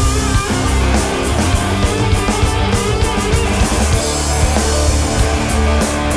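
Rock band playing live: distorted electric guitar, bass guitar and a drum kit with steady cymbal and drum hits, loud and continuous.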